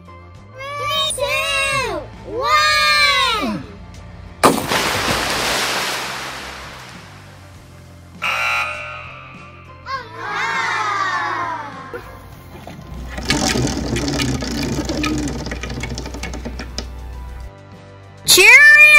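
A plastic toy grocery cart splashing into a swimming pool: one sharp splash about four seconds in, its hiss fading over a couple of seconds. Before it come children's drawn-out voices that rise and fall, over background music.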